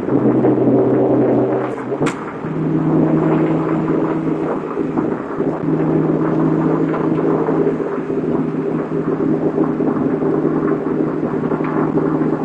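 In-cabin sound of a Mitsubishi 3000GT VR-4's twin-turbo V6, fitted with upgraded 19T turbochargers, driving on the freeway. About two seconds in the engine note breaks with a short sharp sound, then runs at higher revs in a steady drone.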